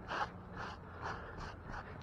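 A man breathing close to the microphone, several short soft puffs about half a second apart, over a low steady background rumble.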